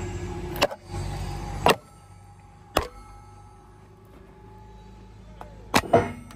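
Sharp steel-on-steel clanks as a machined square auger drive is lowered into the auger's square drive box for a test fit: five strokes, the last two close together near the end, each ringing briefly. A low engine hum runs under the first two seconds, then drops away.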